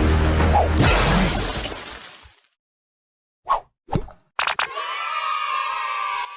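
Cartoon sound effects and music: a loud, dense stretch that fades out about two seconds in, a short gap, two quick pops, then a long held tone with many overtones starting about four seconds in.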